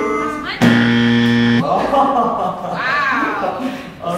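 A game-show style wrong-answer buzzer sound effect: a loud, steady, low buzz lasting about a second, starting a little over half a second in, with voices after it.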